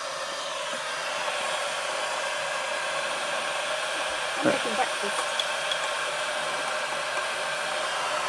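A blower running steadily, making an even whooshing hiss.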